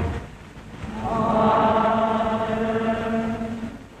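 Church choir chanting, holding a sustained chord. It swells in about a second in and fades away near the end.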